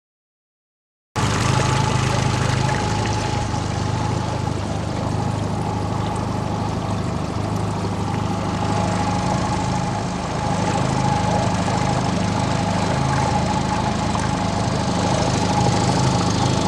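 Motor launch's engine running steadily at low speed, with water rushing and splashing along the hull; it starts abruptly about a second in.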